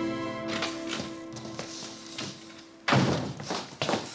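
A soft background music cue of held notes fades out, then about three seconds in come a loud thump and a quick run of heavy footsteps on a wooden floor.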